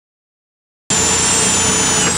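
Silence for about the first second, then a corded electric drill cuts in abruptly, running at speed with a high whine as it bores into plywood.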